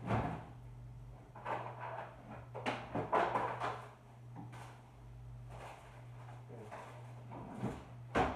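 Off-microphone rummaging for scissors: drawers and cupboards opened and shut in several separate bursts of knocks and scrapes, over a steady low hum.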